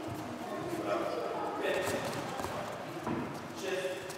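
Indistinct background voices with light, irregular thuds and footfalls.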